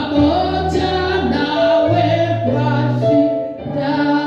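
A woman singing a gospel song into a microphone, holding long notes, over an electronic keyboard accompaniment with sustained low bass notes.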